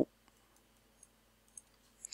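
Two faint computer mouse clicks about half a second apart, over quiet room tone.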